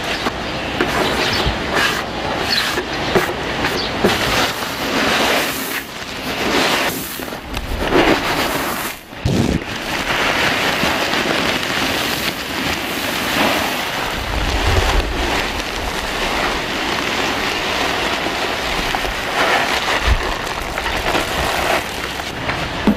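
A rice-milling machine running while rice grains pour through its hopper: a steady, dense rattling clatter with many short knocks in the first half and a low rumble for a couple of seconds later on.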